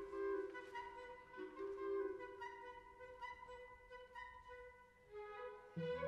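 Symphony orchestra playing a soft passage of long held notes that grows quieter toward the middle; deeper, fuller notes come in near the end.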